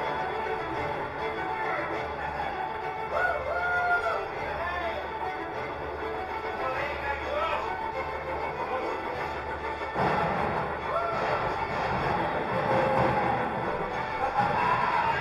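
The ride's soundtrack playing in the train compartment: music with voices, which gets suddenly fuller and louder about ten seconds in.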